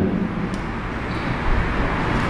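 Steady rushing background noise with no voice, even and unbroken throughout.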